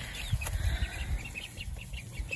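Young chicks peeping softly in a quick run of short, faint chirps. Low rumbling on the microphone comes with them early on.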